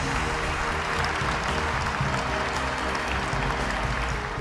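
Audience applauding, with stage play-off music holding steady low notes underneath.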